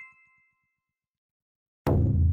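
Title-card sound effects: a bright chime ding rings out and fades within the first half second. After about a second of silence, a sudden loud low boom hits near the end and keeps rumbling.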